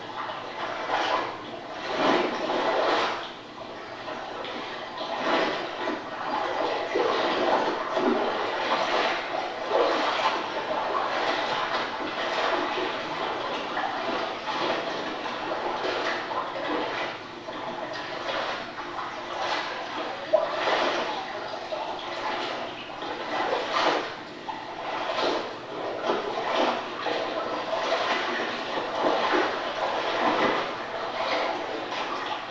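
Water splashing and sloshing as laundry is washed by hand in shallow lake water. The sound comes in uneven swells.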